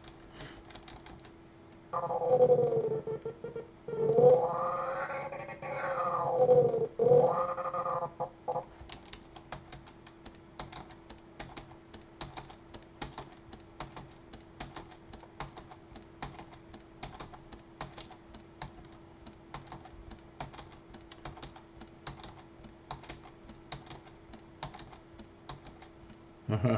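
A high-pitched, wailing cartoon cat 'meow' voice from the animation's sound track, rising and falling in pitch for about six seconds. After it comes a steady run of computer keyboard and mouse clicks for the rest of the time.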